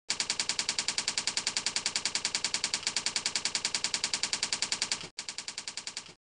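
Typing sound effect: a rapid, even run of key clicks, about ten a second, that breaks off briefly near the end and resumes more softly.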